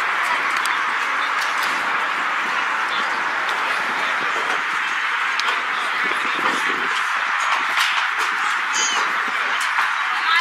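Steady outdoor background noise with distant, indistinct voices of players and people around a football field. A short high chirp sounds near the end.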